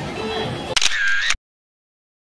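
Bar ambience with background music, broken about three-quarters of a second in by a short, loud, high-pitched effect sound. The audio then cuts off abruptly into dead silence at an edit.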